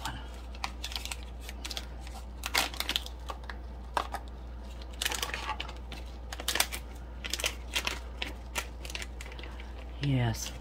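Irregular small clicks and crinkles of a thick plastic piping bag being pinched and twisted in gloved hands, over a low steady hum.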